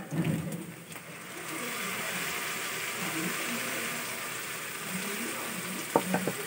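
Sizzling in a wok as tomato puree is poured onto chopped onions and curry leaves frying in oil. The sizzle swells about a second in and then holds steady.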